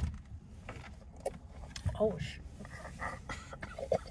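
A person sipping a very hot hot chocolate through a straw: quiet sips and small mouth noises, with a short startled 'oh' about halfway through as the drink almost burns her tongue.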